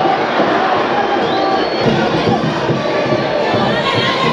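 Stadium crowd of football supporters cheering and shouting steadily, with a brief high whistle about a second and a half in.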